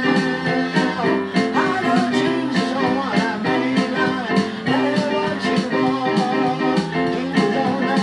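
A male voice singing a blues-tinged gospel song over chords played on an electronic keyboard, with a steady percussive beat.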